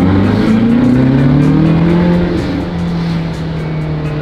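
A petrol sports car's engine, heard from inside the cabin, pulling hard under acceleration: its note climbs for about two seconds, then drops to a lower pitch at an upshift and carries on steadily.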